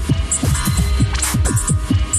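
Techno from a DJ mix: a steady deep bass hum underneath rapid falling pitch blips, several a second, with short high ticks and hiss hits on top.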